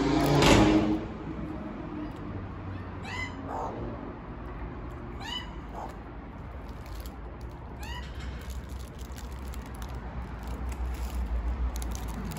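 Australian magpies calling: one loud call in the first second, then three short, high calls a couple of seconds apart, over a low rumble that grows near the end.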